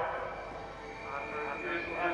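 Faint, indistinct voices in a lull between commentary, with a thin steady high tone during the second half.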